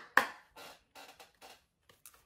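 A deck of cards being shuffled by hand: a sharp slap just after the start, then softer clicks about every half second.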